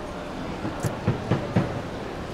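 Steady hum and hubbub of a large indoor shopping-mall hall, with a brief high hiss a little under a second in and four soft low thumps about a quarter second apart after it.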